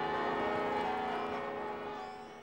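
Bell-like tones held together as a steady chord, fading out near the end.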